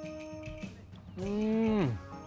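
A cow moos once, a little over a second in: a loud call held briefly that falls away sharply at its end. Soft background music plays before it.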